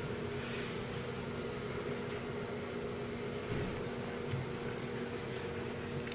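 Steady low hum with a faint hiss: the background of a quiet room, with no distinct events.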